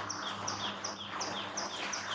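Regular high-pitched chirping, about three short falling chirps a second, over a steady low hum.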